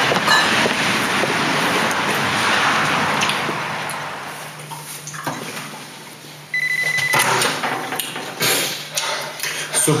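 A phone rings briefly with a short electronic trill about two-thirds of the way in, and is picked up just before the end. Before that there is a steady rushing noise that fades out, and a few small knocks and clicks follow the ring.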